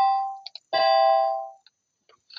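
BeepBox 'bell synth' chords sounding as notes are entered in the sequencer: one chord fades away, a short click follows, then a second chord starts about three-quarters of a second in and fades out within a second.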